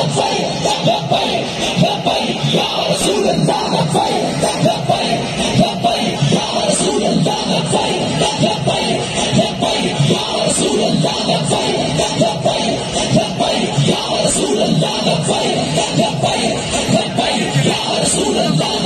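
Loud music with singing over a steady beat.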